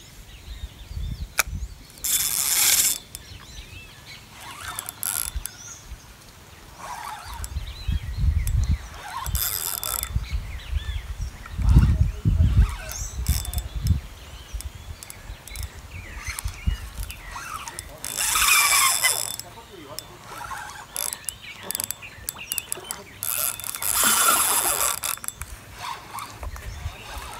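Spinning reel being worked by hand, a mechanical ratcheting clicking, with a few short hissing bursts and low thumps of handling noise on the microphone.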